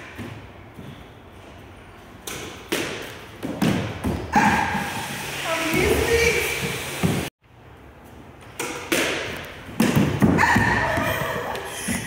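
A squash ball hit by a racket and bouncing off the walls and wooden floor of a squash court: a run of sharp, irregular thuds with a hall echo.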